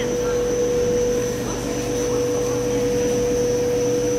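Polyethylene film blowing machine running: a steady mechanical drone with a steady mid-pitched whine over it and a faint high tone.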